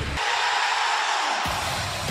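Rock entrance music starting up: a dense rushing swell with the bass cut out, the full low end coming in suddenly about one and a half seconds in.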